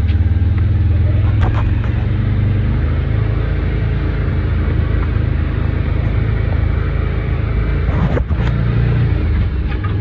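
Side-by-side UTV engine running with a steady low drone as the machine pulls away from a stop in high range and drives slowly along a dirt trail. There is a brief knock about eight seconds in.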